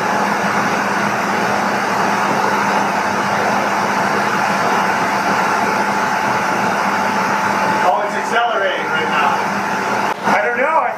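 Steam-driven Tesla (bladeless disc) turbine running on live steam from the boiler: a loud, steady rush of steam with a few steady whining tones, swelling slightly in the first second. A man's voice comes in briefly near the end.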